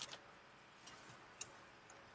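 Near silence, with a few faint clicks around the middle.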